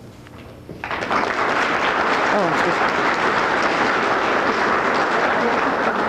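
Audience applauding, starting about a second in and holding steady before tailing off at the end.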